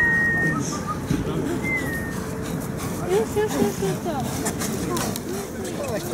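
Indistinct chatter of several people talking at once, with two short, high, whistled notes in the first two seconds.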